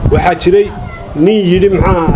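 A man speaking Somali into a microphone, with drawn-out, sung-like vowels and a short pause about a second in.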